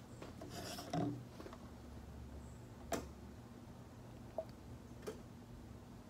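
Faint handling sounds: a brief rubbing shuffle about a second in, then a few light clicks and knocks as plastic bottles and a plastic measuring cup are moved on a tabletop.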